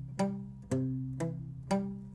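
Acoustic guitar playing a palm-muted arpeggio on a C chord: single notes picked one after another on the fifth, fourth and third strings in a down, up, up pattern. Four evenly spaced notes, about two a second, each ringing briefly and fading before the next.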